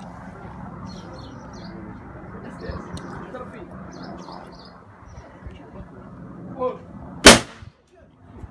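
A single shotgun shot at a clay target, sharp and loud, with a short echo after it, a little after seven seconds in.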